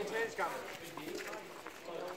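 Brief Danish speech with a few light knocks underneath.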